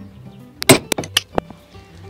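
A quick run of sharp metal clinks, about six within a second, as the brake wheel cylinder and metal tools are handled on a workbench, over background music.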